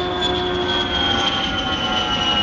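Jet airliner sound: a steady rush of engine noise with a high whine that falls slowly in pitch, as of a plane passing.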